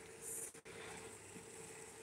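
Faint sizzle of a chicken breast frying in butter in a nonstick pan over medium-low heat, over a steady low hum, with a brief louder hiss near the start.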